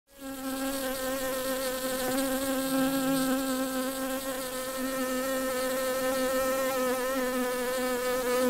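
Bees buzzing: one steady, even drone with a clear low pitch and a rich stack of overtones, fading in quickly at the start.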